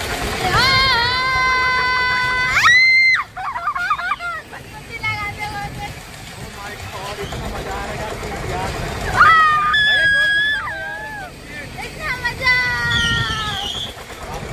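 Riders screaming on a moving fairground ride: long, high-pitched held cries, one early, one near the middle and one near the end, with laughing between them and wind rumbling on the microphone.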